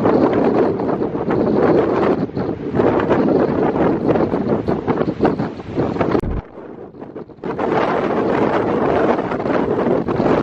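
Strong gusty wind buffeting the camera's microphone, with heavy surf breaking beneath it. The wind noise drops away for about a second past the middle, then comes back.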